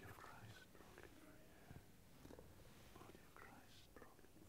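Near silence with faint, low murmured voices.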